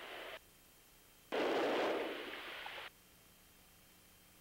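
A short burst of hiss that starts suddenly about a second in, fades over about a second and a half and then cuts off, over faint steady background hiss.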